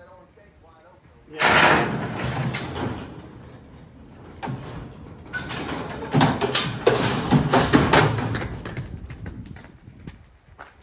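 Steel livestock squeeze chute and head gate opening with a sudden loud metallic crash as a bison calf is let out, followed a few seconds later by a run of clanks and rattles as the head gate is worked again.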